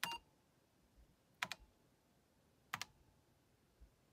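Keystrokes on an Apple IIe keyboard: a short click at the start, then two sharp double-click key presses about a second and a quarter apart, with near quiet in between.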